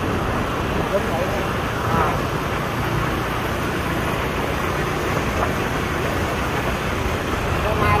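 Steady road and wind noise from travelling along a busy city road, with passing traffic.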